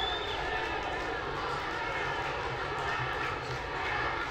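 Stadium crowd noise: a steady din of many voices from the stands.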